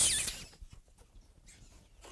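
A long, high, squeaky kissing sound made with puckered lips, a drawn-out 'big tall kiss', that stops about half a second in, followed by a few faint small clicks.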